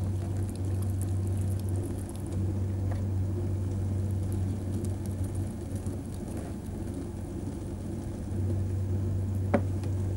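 Potter's wheel turning with a steady low rumble while wet clay is pressed and shaped by hand on it, with a couple of faint clicks.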